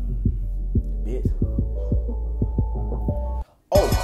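Hip-hop beat playing without vocals: a heavy, sustained 808 bass under repeated punchy bass-drum hits, with a held melody line coming in about a second in. The beat cuts out for a moment near the end, then a rapping voice comes in.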